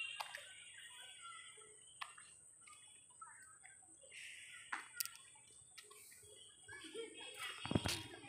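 Quiet outdoor night ambience: faint distant voices and a steady high-pitched whine, broken by a few sharp clicks, with a louder knock near the end.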